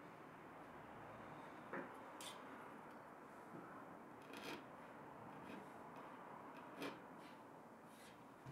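Near silence, with a few faint taps and rubs as marking tools (a marking gauge, then a square with a steel rule) are handled and slid on a plywood bench top.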